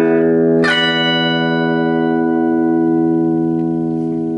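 Fender American Telecaster electric guitar played through an amplifier: a chord already sounding is struck again about two-thirds of a second in, then left to ring out and slowly fade.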